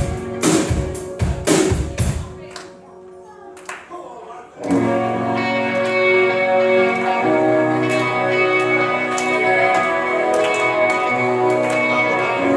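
Live rock band: a few loud hits with ringing chords in the first two seconds, a short lull, then from about five seconds in an amplified Les Paul–style electric guitar playing sustained chords as the song begins.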